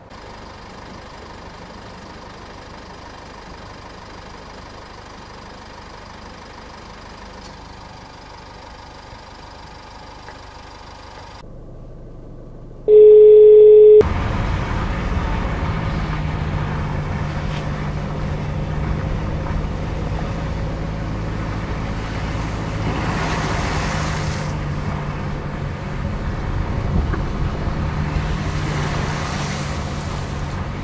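Car driving noise: a steady engine hum with tyre and road noise. A little before the middle there is an abrupt switch and a loud, steady, one-second beep, after which the driving noise is louder. Two swells of hiss come in the second half.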